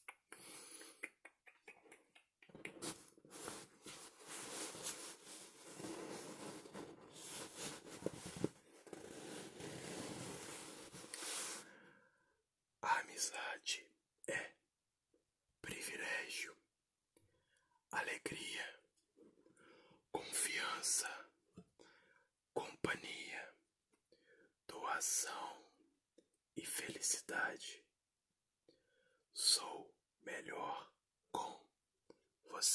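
Close-up scratching and rubbing noise, steady and dense for the first twelve seconds or so, then a run of short whispers in Portuguese, one word or phrase at a time with pauses between.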